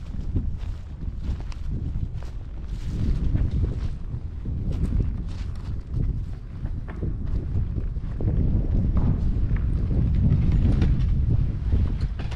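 Wind rumbling on the microphone, with footsteps and scattered knocks and clatters as large door panels are carried and handled.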